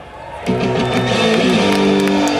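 Hip-hop backing track over a festival PA, cutting in about half a second in after a brief lull, with held melody notes that step in pitch.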